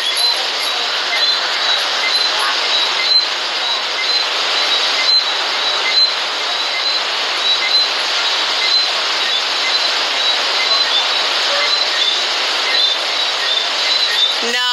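Ocean waves making a steady, loud wash of surf. Through it come short high chirps repeating about every half second.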